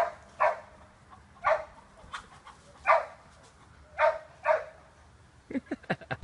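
A dog barking: about six short barks, some coming in quick pairs, with quiet between them, and a few soft knocks near the end.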